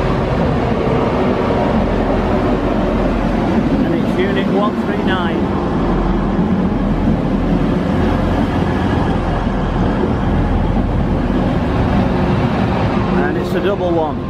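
TransPennine Express Class 185 diesel multiple unit arriving along the platform and passing close by: a steady diesel engine drone over wheel and rail noise, from its Cummins underfloor engines.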